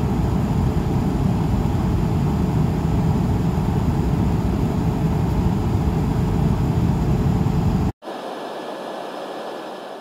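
Airliner cabin noise in cruise, a steady, loud rush of jet engines and airflow, heaviest in the low end. It cuts off abruptly about eight seconds in, leaving a quieter, thinner hiss that begins to fade.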